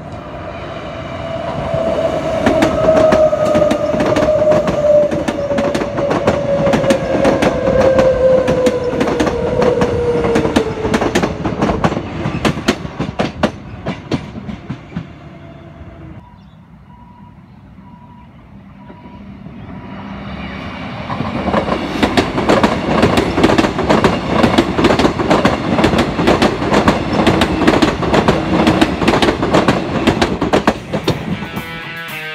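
Electric multiple unit trains passing close by, wheels clacking rapidly over the rail joints. On the first pass a tone falls steadily in pitch as the train goes by. After a brief quieter spell near the middle, another pass of dense wheel clacking builds and runs on.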